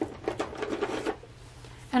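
Brief rustling with light clicks and clatter from objects handled on a desk, lasting about a second.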